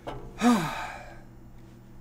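A man sighs once about half a second in: a short voiced exhale that falls in pitch and trails off into breath.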